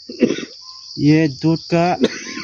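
A steady, high-pitched insect chorus that does not stop or change.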